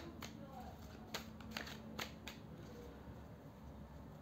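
A deck of tarot cards being shuffled by hand: a handful of faint, separate soft snaps and clicks of card against card.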